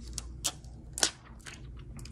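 Plastic protective film being peeled off a clear waterproof phone case, giving a few sharp crackling clicks, the loudest about half a second in.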